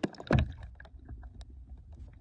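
Muffled underwater sound picked up by a camera moving near a lake bed. A short loud swoosh of water comes about a third of a second in, then a steady low rumble with scattered small clicks.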